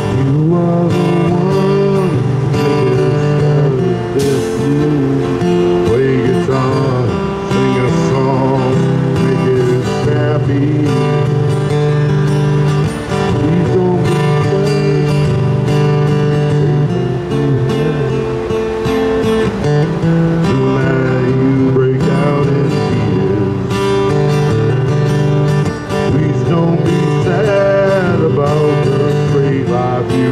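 Acoustic guitar being played: a continuous instrumental jam with chords and notes changing throughout.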